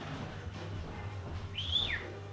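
Sulphur-crested cockatoo giving one short whistle near the end, rising in pitch and then falling, over a steady low hum.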